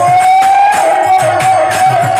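Bengali kirtan music: a male lead singer holds one long, wavering sung note over a harmonium. A two-headed khol drum and jingling hand percussion keep a steady beat of about four strokes a second.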